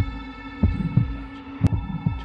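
Tense film score: a steady high drone with a few low, dull thuds spaced irregularly through it, and one sharp click about one and a half seconds in.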